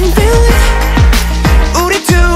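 Music: an instrumental stretch of an electronic K-pop dance track, with deep bass hits that slide down in pitch several times and a bending pitched lead line over a heavy beat. The bass drops out briefly at the very end.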